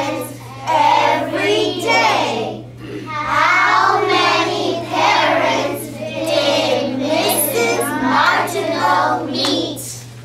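A class of young children reading a written sentence aloud together in unison, in slow, drawn-out chanting phrases, with a steady low hum underneath.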